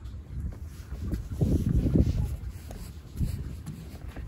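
Wind buffeting the microphone: a low rumble that swells and falls in gusts, strongest around the middle.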